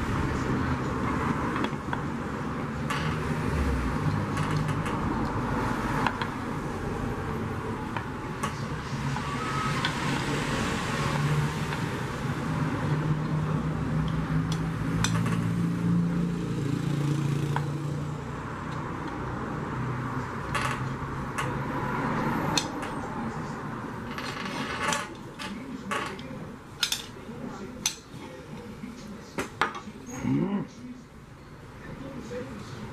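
A metal tool scraping and clicking against an aluminium pressure-cooker lid, with sharper clinks coming more often in the last few seconds.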